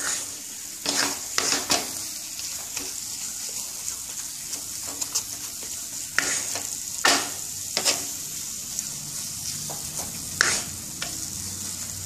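Thick moong dal halwa frying in a nonstick pan with a steady high sizzle. A wooden spatula scrapes and presses it against the pan in half a dozen sharp strokes, spaced irregularly.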